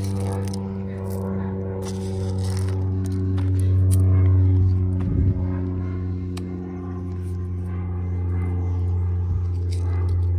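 A steady engine hum with a low, even pitch, louder around four seconds in and then easing back, with a few light crackles and scrapes on top.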